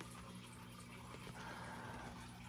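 Quiet room tone with a faint, steady low hum and no distinct events.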